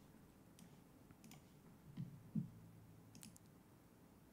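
Near silence: room tone with a few faint, sharp clicks scattered through it and a couple of soft low sounds about halfway through.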